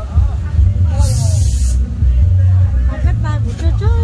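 A short burst of hissing, just under a second long, about a second in, over a steady low hum and voices at a busy fairground stall.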